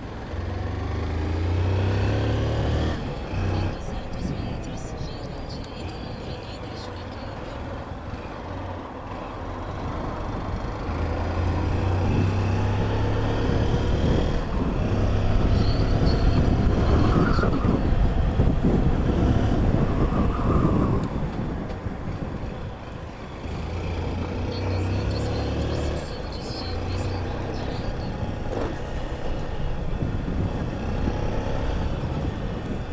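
Honda CG 160 Fan motorcycle's single-cylinder four-stroke engine running while riding through city traffic. The engine note rises and falls as it speeds up and slows.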